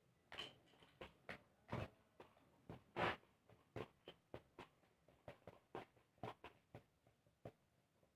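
Two homemade cardboard spinning tops (Beyblades) clashing as they spin, a string of short, light clacks at irregular intervals that come faster from about halfway on.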